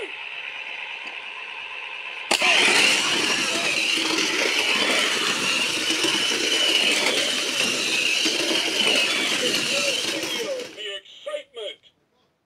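Shake N Go toy race cars and speedway playset during a race: a sharp click a little over two seconds in as the starting gate releases, then about eight seconds of loud electronic racing sound effects with voice-like bits, which stop near the end with a few short sounds.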